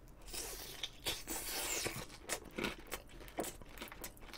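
Biting into and chewing a sauce-dipped fried cheese pork cutlet (cheese tonkatsu): irregular crunches of the breaded coating and wet mouth clicks, several a second.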